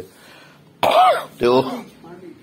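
A man clearing his throat: a sudden harsh burst about a second in, followed by a short voiced sound.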